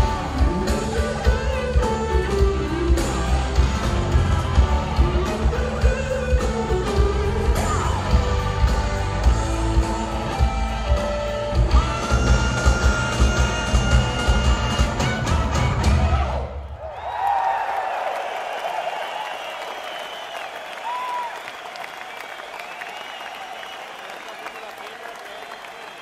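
Live rock band with drums, bass and electric guitar playing the final bars of a song, which ends abruptly about sixteen seconds in. Crowd applause and cheering follow.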